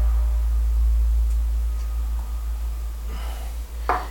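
A steady low hum with little else over it, and a soft breath about three seconds in.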